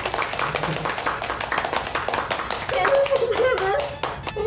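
A few people clapping quickly and steadily in congratulation, with a voice coming in over the clapping near the end.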